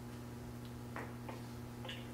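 Faint room tone with a steady low hum and a few soft clicks.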